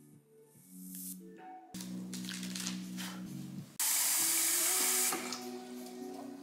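Background music with a steady melody. About four seconds in, a kitchen faucet runs into a stainless steel sink for about a second and a half, then stops suddenly.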